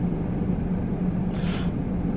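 Car engine and cabin rumble heard from inside the car, a steady low hum, with a brief soft hiss about halfway through.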